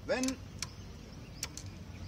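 A short spoken word, then faint outdoor background with a couple of sharp clicks; the engine is not running.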